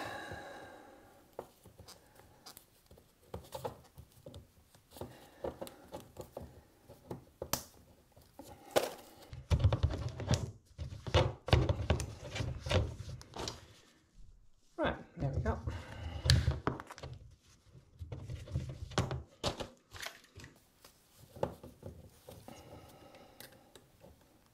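Gloved hands cutting the outer sheath off electrical cables with a utility knife at a wall back box: scraping and slicing of the plastic sheath, rustling of the cables and gloves, and scattered knocks of the cables against the box. The handling is loudest in two stretches in the middle.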